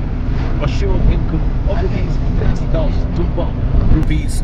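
A car's steady low road rumble and engine noise, heard inside the cabin while it drives on a concrete bridge deck, with indistinct voices talking over it.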